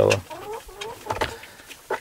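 Domestic hens clucking softly, with a few short, wavering calls in the first second.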